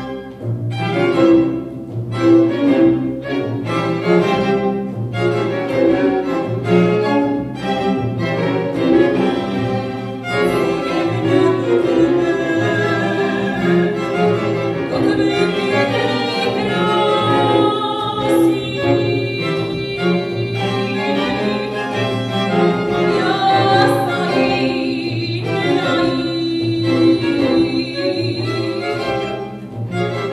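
A string chamber orchestra plays a rhythmic accompaniment over a pulsing bass line, and a mezzo-soprano sings over it from about ten seconds in. It is a new piece for folk-style mezzo-soprano and strings.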